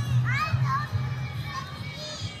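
Music with a bass line of repeated low notes, with children's high voices calling out over it.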